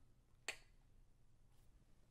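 A single sharp click about half a second in, fading quickly, in otherwise near-silent room tone.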